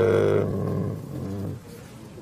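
A man's voice holding a long hesitation hum, 'eee… mmm', at one steady low pitch, fading out about a second and a half in.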